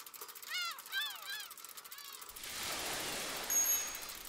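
A bird calling: a quick run of short chirps that each rise and fall in pitch, about five in a second and a half. A soft, steady rushing noise follows in the second half.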